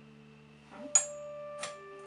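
A floor lamp's switch clicking as it is turned on: one sharp click about halfway through, then a lighter click, over soft held musical notes.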